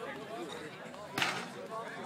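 Faint chatter of onlookers' voices, with one short, sharp knock a little over a second in.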